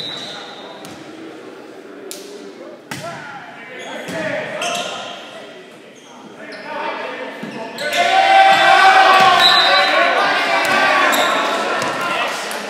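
Volleyball rally in an echoing gymnasium: a few sharp smacks of the ball being hit early on, then many voices shouting and cheering loudly from about eight seconds in as the point ends.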